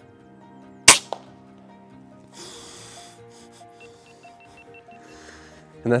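A single shot from a suppressed PCP air rifle firing a slug: one sharp crack, with a fainter click a quarter of a second later. Background music plays under it.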